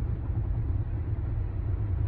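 Steady low rumble of engine and road noise heard inside a car's cabin while it is being driven.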